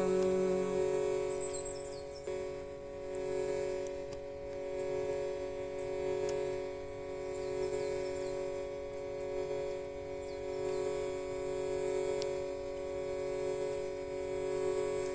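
A steady musical drone of several held tones, under which a sung note dies away about a second in. Faint, short bird chirps come and go high above it.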